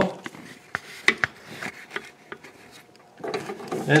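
Handling noise from a hand-held camera being moved about under a vehicle: scattered sharp clicks and knocks with light rubbing and scraping. A man's voice starts near the end.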